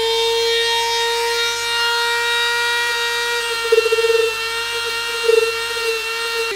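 Dremel rotary tool with a stone grinding bit running at a steady high-pitched whine as it grinds the edge of a foam-mat shield. Two short, louder rough patches come about four and five seconds in, as the bit bites into the foam.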